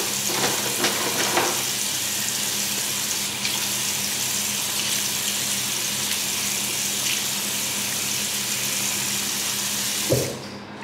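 Bathroom sink faucet running steadily into the basin while hands are washed under the stream. There are a few short knocks and splashes in the first second and a half.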